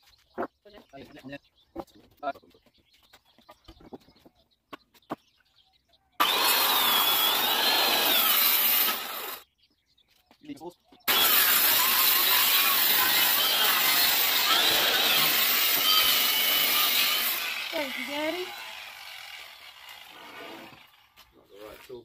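Handheld circular saw ripping a length of timber lengthwise: a cut of about three seconds, a short stop, then a longer cut of about six seconds, its whine wavering under load, before the blade winds down. Light clicks and knocks of handling come before the first cut.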